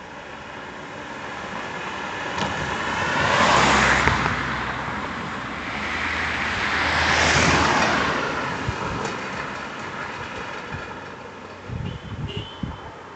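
Cars driving past on an asphalt road, the tyre and engine noise swelling and fading twice: one pass peaks about four seconds in and another about seven seconds in.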